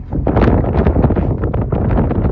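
Wind buffeting the microphone: a loud, rough, gusting rumble that swells just after the start.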